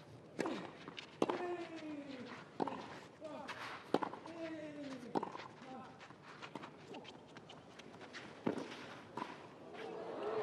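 A tennis rally on a clay court: sharp racket-on-ball strikes about every second and a half. A player grunts twice with long calls that fall in pitch, each just after a shot.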